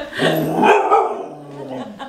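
A golden retriever giving one long, drawn-out bark-howl with its head thrown back, the pitch dropping in the second half.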